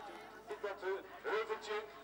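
Faint speech: quieter voices at low level between the commentators' louder lines.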